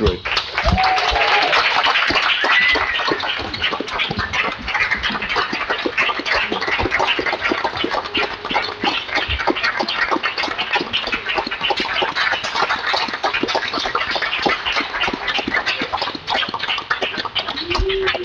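A roomful of people applauding, with a few cheers and voices among the clapping. It is loudest in the first few seconds, then settles and keeps going.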